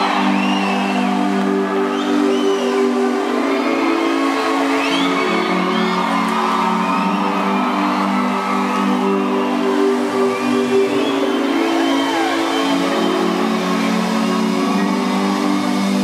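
Live arena concert music heard from the audience: steady held chords through the PA, with the crowd screaming and whooping over it. The sound is thin, with no bass.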